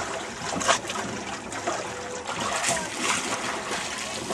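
Water splashing and trickling in uneven bursts, with a sharper splash about three-quarters of a second in.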